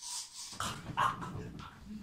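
A man's wordless vocal noises in short, irregular bursts.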